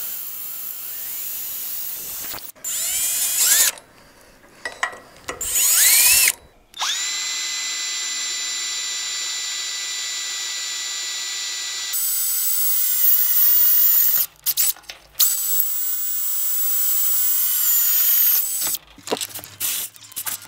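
Cordless drill boring holes in a steel trailer frame: short trigger bursts with the motor spinning up in the first few seconds, then two long steady runs of several seconds each with a constant whine, broken by brief stops.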